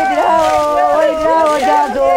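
Mourners wailing a funeral lament, several voices overlapping in long, wavering held notes.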